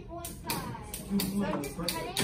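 Indistinct voices talking, with a few short sharp clicks.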